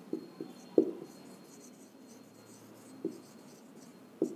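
Faint sound of a marker writing on a whiteboard in a few short strokes, the clearest just under a second in and another about three seconds in.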